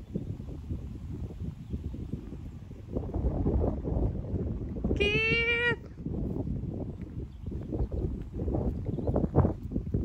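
Wind rumbling and buffeting on the microphone outdoors. About halfway through, a single short animal call of under a second stands out above it.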